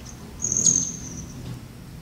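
A hummingbird's high, thin buzzing trill, starting about half a second in and lasting under a second.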